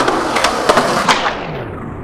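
Skateboard wheels rolling on concrete, with a few sharp clacks of the board in the first second or so.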